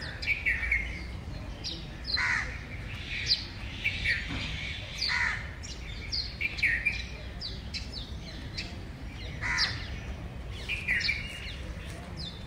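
Several birds calling outdoors: short, high, downward-sweeping chirps several times a second, with a few lower, harsher calls among them. A steady low rumble runs underneath.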